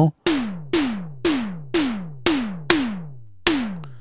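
Reason Kong Drum Designer's analog-style synth tom-tom played seven times, about twice a second. Each hit opens with a sharp click and then falls steadily in pitch as it decays, and the click is being adjusted with the module's Click Level knob.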